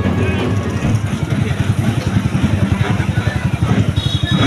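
Diesel tractor engine running with a fast, even chugging beat.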